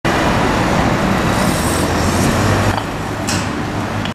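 Road traffic with a heavy engine running nearby: a loud, steady rumble with a low engine hum underneath.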